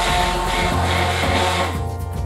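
Handheld immersion (stick) blender running in a stainless steel bowl, puréeing celeriac cooked in milk into a smooth sauce, with background music underneath.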